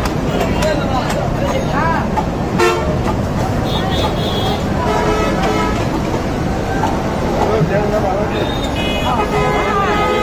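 Busy street-market din: background voices and traffic noise, with vehicle horns tooting several times, around four to six seconds in and again near the end.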